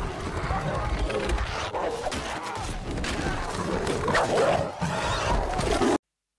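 Film battle soundtrack: a dense din of horses and shouting men in a mounted fight, cutting off abruptly at the end.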